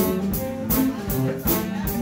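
Live blues band playing an instrumental stretch between sung lines: electric guitar over a drum kit keeping a steady beat of about four hits a second.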